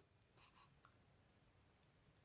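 Near silence: room tone, with a couple of very faint ticks about half a second in.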